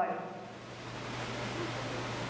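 A man's voice says one word at the start, then a steady hiss with a low hum underneath.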